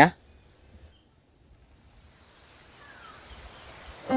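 Steady, high-pitched insect chorus for about a second, then it cuts off abruptly, leaving only a faint background hiss.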